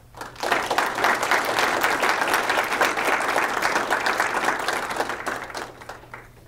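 A small audience applauding: dense clapping that starts just after the opening, holds steady, then thins out and fades near the end.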